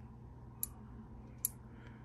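Metal feeding tongs clicking twice, two short sharp clicks less than a second apart, as they work at a snake's mouth, over a faint steady low hum.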